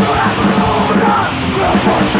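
Loud, fast hardcore punk (powerviolence) recording: distorted guitars, bass and drums under shouted vocals.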